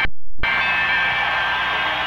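The sound cuts out for about half a second at a VHS tape edit. Then a loud, steady rush of noise follows, the start of a live concert recording.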